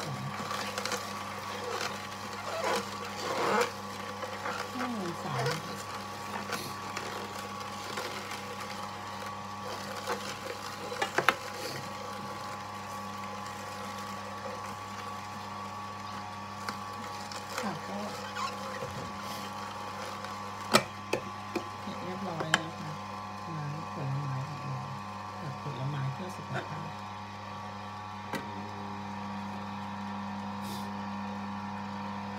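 Electric juicer motor running with a steady hum while fruit is fed in, with a few sharp knocks and clacks from the machine.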